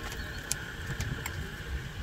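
Turn-signal stalk on an electric golf cart's steering column being switched: a few faint, irregular clicks over a faint steady high tone.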